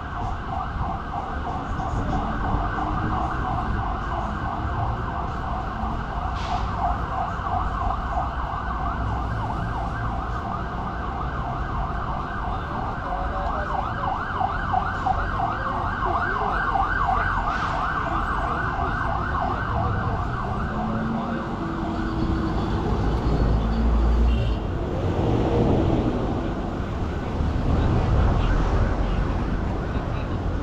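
Emergency vehicle siren in a fast yelp, its pitch sweeping up and down several times a second, fading away about two-thirds of the way through. Low traffic rumble runs underneath and swells near the end.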